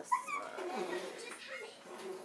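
Short, high-pitched whining squeals that glide up and down near the start, followed by softer, lower whimpers.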